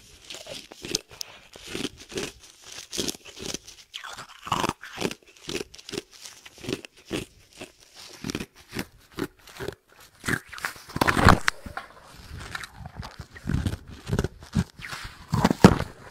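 Dome-shaped pieces of ice being bitten and crunched between the teeth: a run of irregular crunches and chewing, with a louder flurry of crunching about eleven seconds in and again near the end.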